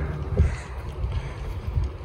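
Wind buffeting the microphone outdoors: an uneven low rumble.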